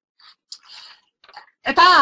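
Faint, scattered clicks and rustles picked up over an online voice-chat microphone. A voice starts speaking loudly near the end.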